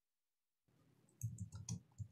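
Faint computer keyboard keystrokes: a handful of short clicks in the second half, typing a short terminal command after a moment of dead silence.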